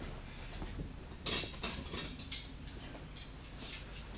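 Steel linear rods of an Anet A6 3D printer clinking and ringing against each other as they are picked up and handled: a string of short, bright metallic rings starting about a second in.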